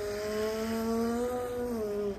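A woman holding one long voiced 'vvvv' sound, teeth on the lower lip, in imitation of a van's engine. Her pitch holds fairly steady, lifts slightly and then drops just as it stops at the very end.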